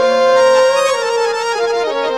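Live Pakistani folk music: a harmonium playing held, reedy notes that step down in pitch toward the end.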